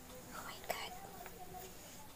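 A woman's soft whispered speech, too low for the words to come through, with one short click about a second in.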